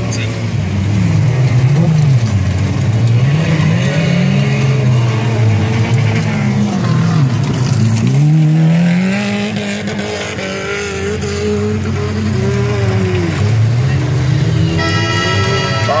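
Stock car engines revving up and down as the small hatchbacks race around a dirt track, the pitch rising and falling over and over as they accelerate and lift off. Near the end, music with steady held tones comes in.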